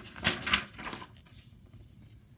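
A page of a large picture book being turned by hand: a quick rustle and flap of paper, loudest twice within the first second and dying away soon after.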